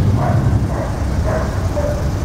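Car engines and traffic running close by in the street, a steady low rumble, with a dog barking in short repeated calls above it about twice a second.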